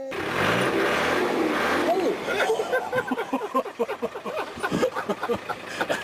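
A steady rushing noise with people's voices over it, short excited calls coming thick and fast from about two seconds in.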